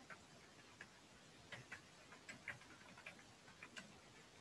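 Faint, irregular clicks of computer keyboard keys being typed, over near silence.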